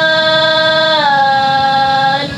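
Synthetic speech output of the NETtalk neural network early in learning: one long, held, machine-voiced vowel-like tone. It steps slightly lower in pitch about a second in, the babble of a network still near its starting zero weights.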